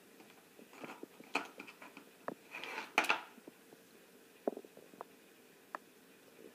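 A quiet room with a few faint, scattered clicks and short rustling noises, the loudest about three seconds in.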